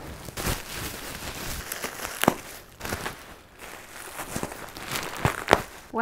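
Plastic bubble wrap rustling and crinkling as it is handled and pulled off a framed print. There are a few sharp crackles, one about two seconds in and two close together near the end.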